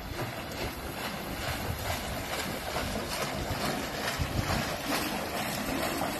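Pool water splashing and sloshing as a man runs through waist-deep water, with irregular low rumbles of wind on the microphone.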